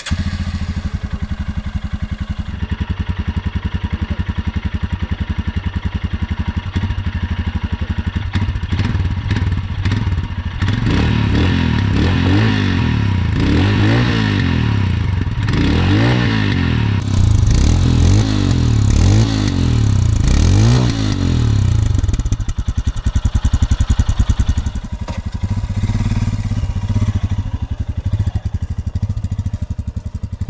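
Royal Enfield Scram 411's single-cylinder engine idling steadily, then revved in a series of quick throttle blips for about ten seconds before settling back to idle.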